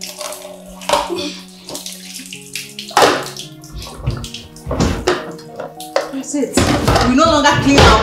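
Water running and splashing in a kitchen sink as dishes are washed by hand, with a few louder splashes. Background music with long held notes plays throughout, and a woman's voice comes in near the end.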